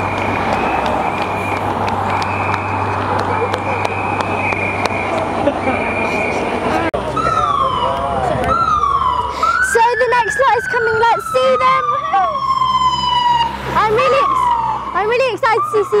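Convoy vehicles passing close along the street, then a police siren sounding from about seven seconds in, in repeated falling wails with one long drawn-out wail near the middle.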